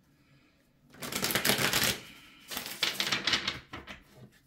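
A deck of cards shuffled by hand in two quick bursts of rapid clicking, the first about a second in and the second about a second and a half later, each lasting about a second.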